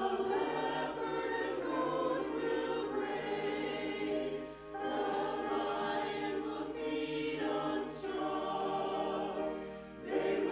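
Mixed church choir singing an anthem with piano accompaniment, the phrases broken by short breaths about halfway through and near the end.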